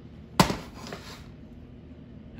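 A single sharp knock with a short ringing tail, followed by a fainter knock about half a second later.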